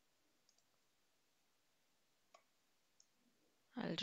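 Near silence broken by a few faint, scattered clicks at a computer, made while copying text and switching browser tabs.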